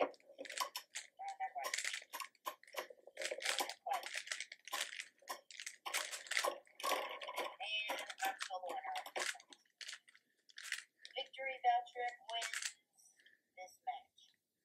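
Beyblade spinning tops clashing and scraping on a hard surface, a rapid irregular run of sharp plastic clacks and rattles that thins out near the end.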